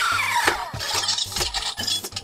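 Motorized faceplate of a KillerBody Iron Man Mark 5 wearable helmet closing on voice command: a falling electronic tone at the start, then the mechanism's whirring and clicking.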